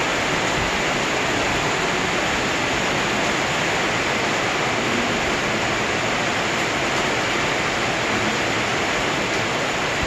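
Steady rain, an even hiss with no separate drops or knocks standing out.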